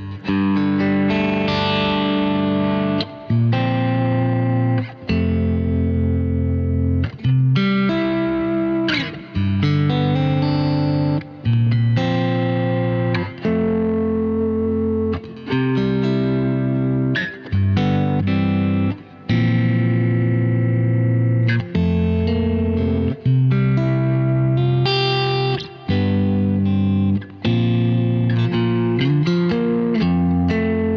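Freshly strung Mayones electric guitar played through its onboard preamp with effects: full, bright chords rung out one after another, each held a second or two and then cut short before the next.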